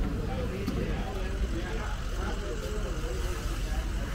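Indistinct chatter of people talking over a steady low rumble.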